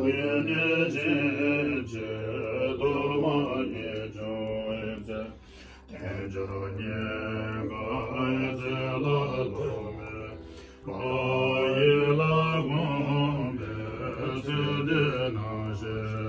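Tibetan Buddhist monks chanting prayers together in deep, steady voices. The chant breaks briefly for breath about six seconds in and again near eleven seconds.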